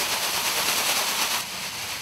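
Metallic gold plastic cheerleading pom-poms shaken close to the microphone: a dense, rapid crinkling rustle that eases off about one and a half seconds in.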